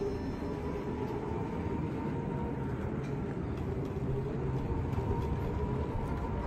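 Wheelchair rolling along a hard floor: a steady low rumble with a faint, steady high whine over it.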